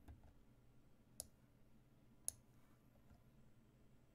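Two sharp clicks about a second apart over a near-silent background, the second louder, as a move is played in an online chess game on the computer.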